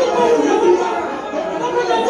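Many women praying aloud at once, their voices overlapping in a continuous dense babble.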